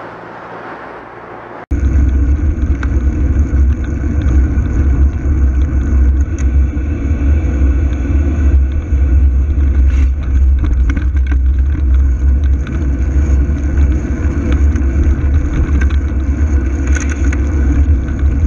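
Loud, steady low rumble of wind and road noise on a low-mounted camera's microphone as the bike rolls along in traffic, starting abruptly a little under two seconds in.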